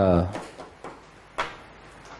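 The tail of a man's spoken word, then two short clicks, the second and louder one about a second and a half in.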